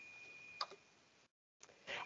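Faint room tone with a thin steady high whine, a single click about half a second in, then dead silence for about a second where the recording cuts, before a faint sound just before the end.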